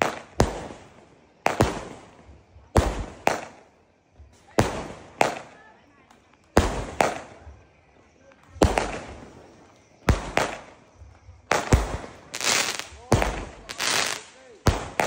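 A 49-shot fireworks cake firing shell after shell: a sharp bang every second or so, each trailing off over a fraction of a second as the shell bursts in the air.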